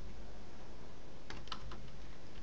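A quick cluster of four or five computer keyboard key clicks, a little past the middle, over a steady low background hum.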